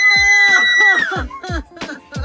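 A high-pitched scream of excitement held steady for about a second, with another voice under it, before it cuts off. From about a second in, a quick beat of sharp hits comes up, as in hip-hop music.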